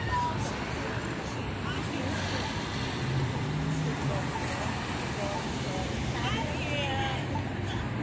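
City street traffic: car engines and tyres running past, with people talking indistinctly in the background.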